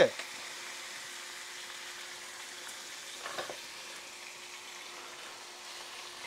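Bacon strips frying in a Lodge 12-inch cast iron skillet, a steady sizzle of fat rendering in the pan.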